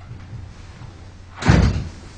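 One heavy thump about one and a half seconds in, over quiet room tone, dying away within half a second.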